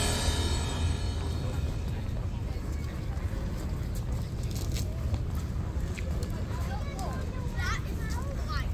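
Outdoor street ambience: a steady low rumble with faint voices of passers-by, a few of them near the end. A music track fades out in the first second.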